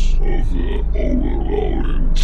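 A deep, heavily processed voice with wavering pitch, its words hard to make out, over a steady low pulsing drone.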